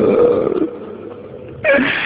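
A man's low, rough moan between held lines of a Persian mourning chant, fading to a quieter pause, then a short loud breathy cry near the end just before the chanting resumes.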